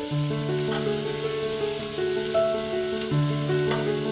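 Chopped vegetables, minced chicken and raw noodle pieces sizzling as they fry in a steel pot, under background music of held notes that change pitch step by step.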